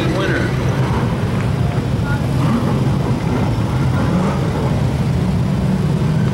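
Late model stock car engines running on the track, a steady low rumble.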